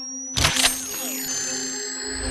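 Sci-fi gadget sound effects over the film score: a thin high whine climbing steadily in pitch over a low electronic hum, with a sharp electronic burst about half a second in followed by tones sliding downward.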